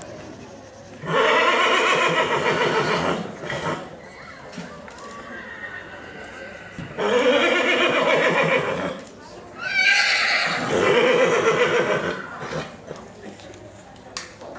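Horse whinnying: three long, loud whinnies of about two seconds each, a few seconds apart.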